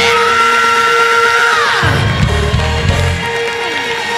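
Gospel choir and band music: a high note is held, then slides down about two seconds in, over a steady sustained chord, with bass notes coming in briefly.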